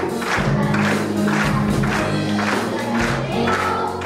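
A song performed live: voices singing over instrumental accompaniment with a steady beat of about two strokes a second.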